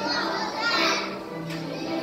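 Music playing with the voices of a group of young children.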